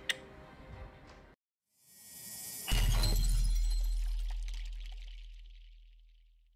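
Background music stops about a second in. After a short gap, an outro sound effect plays: a rising whoosh swells into a sudden deep boom with a bright crash on top, and the boom fades away slowly over the following few seconds.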